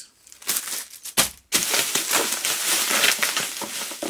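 Plastic bubble-wrap packaging crinkling as it is handled: a few separate crackles in the first second and a half, then continuous crinkling.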